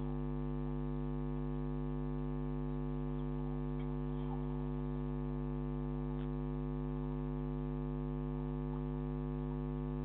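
Steady electrical mains hum with a dense stack of overtones, picked up on a security camera's audio, with a few faint chirps in the background.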